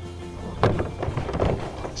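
Plastic jug and backpack sprayer tank being handled, giving a run of irregular knocks and clunks from about half a second in, over background music.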